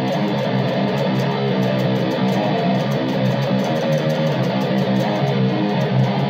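Electric guitar played through a Zoom G2.1U multi-effects pedal on a heavy, thick distortion preset, picked fast and evenly at a steady loudness.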